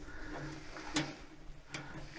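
Two small clicks of wires and connectors being handled in a gate operator's control box, one about a second in and one near the end, over faint rustling.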